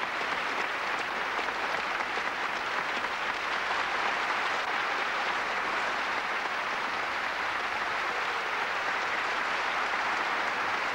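Large concert-hall audience applauding steadily.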